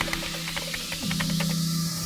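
Tail of an electronic intro music track: the beat drops out, leaving sustained low tones and a few faint fading ticks under a swelling hiss.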